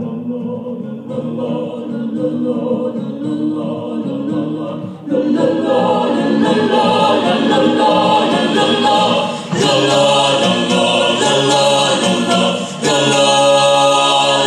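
A mixed vocal group of male and female voices singing in harmony at microphones. It grows louder and fuller about five seconds in, with two brief dips in level later on.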